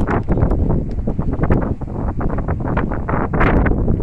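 Wind blowing across the microphone: a loud, uneven rumble with frequent crackles as the gusts hit it.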